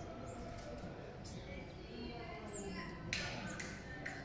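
Indistinct voices in the background over a low, steady rumble of outdoor ambience, with a short burst of hissing noise about three seconds in.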